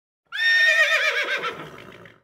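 A horse whinny sound effect: one high, quavering call that falls in pitch and fades away, starting about a third of a second in.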